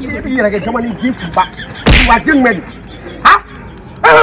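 A young man's voice wailing and crying out in distress, with a few sharp, loud cries in between.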